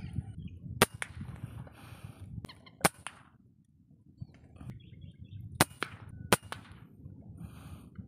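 Four sharp shots from a scoped air rifle. The first two come about two seconds apart and the last two less than a second apart.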